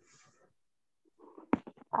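A near-silent gap on a video-call line, with a faint hiss at the start. About one and a half seconds in comes a single sharp click, then a few weaker clicks and faint mutters.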